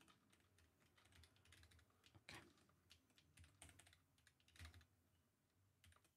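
Faint typing on a computer keyboard: irregular, quick key clicks.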